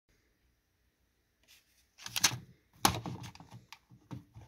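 Handling noise: after a second and a half of quiet, a clatter of small knocks, clicks and rustles, loudest about two seconds in and again just before three seconds.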